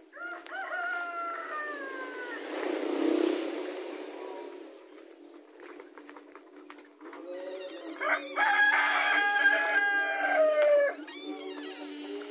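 A rooster crowing twice: a long crow right at the start that slides slightly down in pitch, then a second, louder crow about seven and a half seconds in that holds its pitch and drops at the very end.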